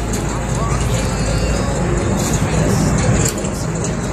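Steady rain hiss over a low rumble.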